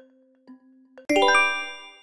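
Soft countdown-style ticking, two ticks a second over a low held note, then about a second in a loud, bright chime rings out and fades. The chime is a reveal sound effect marking the answer being shown.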